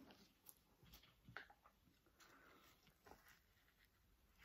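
Near silence, with a few faint light clicks from a knife and a chili pod being handled on a cutting board.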